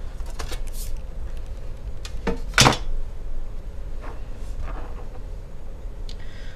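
Aluminium bottom case of a 13-inch unibody MacBook Pro being lifted off by hand after its screws are out: a few light clicks and taps, with one sharper knock about two and a half seconds in.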